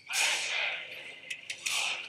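Film soundtrack: two loud, harsh, breathy shouts of straining labourers, about a second and a half apart.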